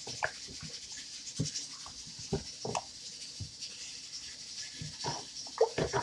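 Spoon stirring and scraping in a pot, with irregular knocks and clinks against its sides, the loudest near the end.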